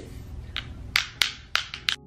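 Plastic lip gloss tubes being handled and opened, with about six sharp clicks and taps coming in quick succession.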